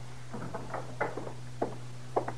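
Radio-drama sound-effect footsteps: about four slow, spaced steps across a floor, over a steady low hum on the recording.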